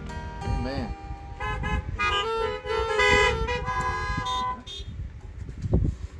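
Several car horns honking together in overlapping steady tones for about three seconds, starting about a second and a half in.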